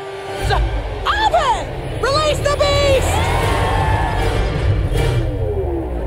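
Film trailer soundtrack: dramatic music with a heavy bass, and shouted voice calls that slide in pitch about one and two seconds in.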